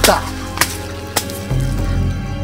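Dark background music with sustained low tones, opening on a sharp hit, with two fainter clicks following about half a second apart.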